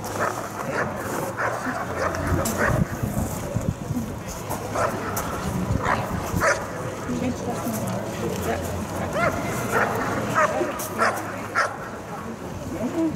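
Working dog barking repeatedly and irregularly at a protection helper, as in a hold-and-bark or guarding exercise.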